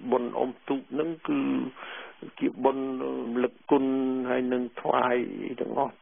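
A man talking in Khmer.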